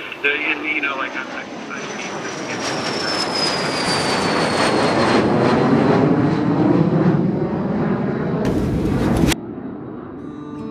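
Jet airliner engines and rushing air heard from inside the cabin, building in loudness over several seconds with a high whine that slowly falls in pitch, then cutting off suddenly near the end.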